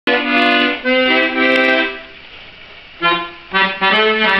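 Piano accordion playing held chords. The music stops for about a second midway, then starts again.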